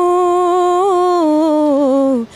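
A woman singing unaccompanied, holding one long, slightly wavering note that slides down near the end.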